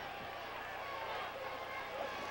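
Steady stadium crowd noise on a football TV broadcast, with faint voices in it.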